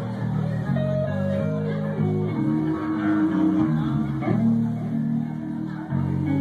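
Live blues-rock band playing an instrumental: electric guitar lead over a moving bass guitar line.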